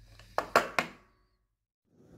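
Three quick handling knocks close together, then the sound cuts off to dead silence about a second in, where the recording is cut.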